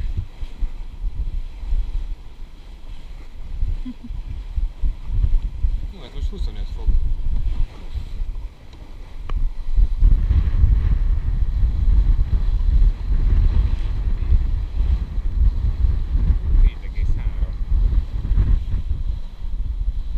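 Wind buffeting the microphone on a sailing yacht under way, with water rushing along the hull; the buffeting gets much stronger from about ten seconds in.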